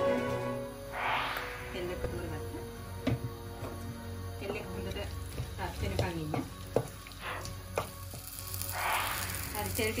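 Cooking oil heating in a clay pot, sizzling lightly, with a few sharp clicks of utensils against the pot.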